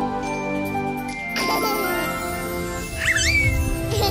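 Light background music with a sparkling chime effect and a whoosh about a second and a half in, then a short high squeak that rises and falls about three seconds in.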